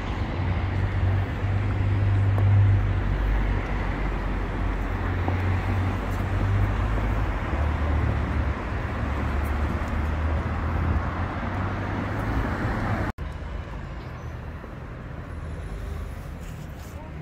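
City street traffic noise: a steady wash of passing cars with a strong low rumble. It drops suddenly to a quieter traffic background a little before the end.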